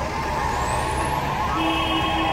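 Noise of a marching street crowd, voices mixed together, with a long high held tone above them. Near the end a steady, even-pitched tone comes in.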